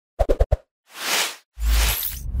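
Title-card sound effects: four quick, punchy pops in the first half-second, a whoosh that swells and fades about a second in, then a sudden heavy low hit with a hiss near the end.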